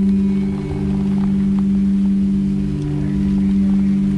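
Two quartz crystal singing bowls sounding together in a steady, sustained low hum of several held tones, with a slight slow waver in level.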